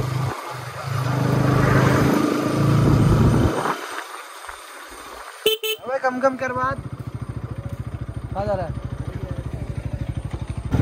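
Bajaj Pulsar NS200's single-cylinder engine running as the bike rides, its note falling away about three and a half seconds in as it slows. A horn toots once about halfway through, and the engine then idles with a steady rapid beat.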